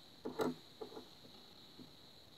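A light tap about half a second in as a tiny Micro Machines toy car is set down on a wooden tabletop, followed by a few fainter small clicks.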